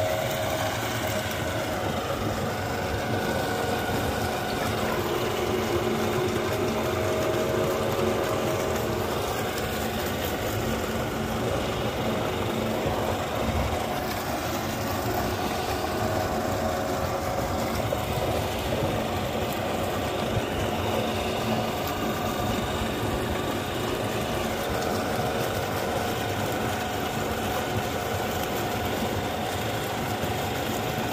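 A motor-driven water pump running steadily, a continuous mechanical hum with a few tones that waver slightly in pitch.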